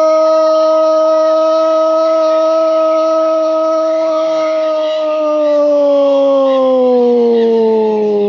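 A sports commentator's drawn-out goal cry, "gooool", sung out as one long held note that sinks slowly in pitch from about five seconds in.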